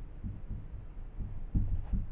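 Dull, irregular low knocks of a marker tapping and pressing against a whiteboard while writing, the loudest about one and a half seconds in.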